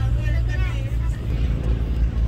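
Steady low rumble of an idling boat engine, with a voice speaking briefly in the first second.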